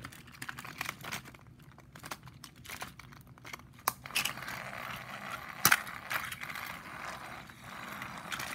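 Plastic toy train engine and coaches being handled by hand over a wooden track: scattered clicks and knocks of plastic, the sharpest nearly six seconds in, with a lighter click about four seconds in.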